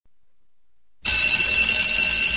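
An alarm starts ringing suddenly about halfway in after silence: a loud, steady, high ringing tone that holds without a break.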